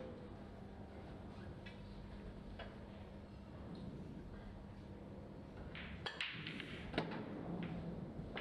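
An English eight-ball pool break-off, heard against low venue hum. About six seconds in, the cue strikes the cue ball and it smashes into the racked reds and yellows. A quick run of ball-on-ball clicks and cushion knocks follows, with one sharper click about a second later.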